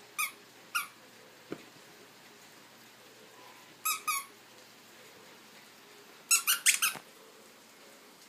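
A dog's squeaky toy squeaking as a toy poodle bites on it: two single squeaks at the start, a quick double squeak about four seconds in, and a fast run of squeaks near the end, the loudest.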